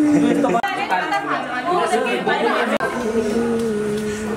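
Several people talking over one another: group chatter in a large room.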